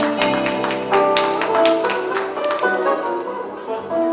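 Live band playing a lively instrumental phrase with a quick, steady beat.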